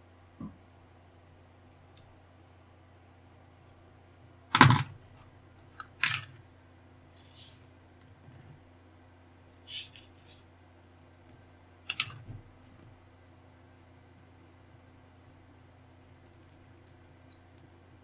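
Small metal hobby tools clicking and knocking against the workbench and plastic kit parts: three sharp knocks, the first the loudest, with a few short scraping sounds between them, over a steady low hum.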